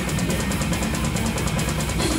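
Drum kit played live in a fast death metal song: rapid, even strokes over a steady wall of band sound.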